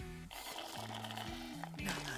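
Quiet music with long held notes in a slow melody.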